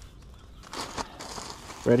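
Rustling handling noise, fabric brushing close to the microphone, starting about half a second in, with a couple of light clicks.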